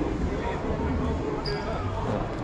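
Indistinct voices talking in the background, over low thuds and rustling as jerseys on hangers are pushed along a clothes rack.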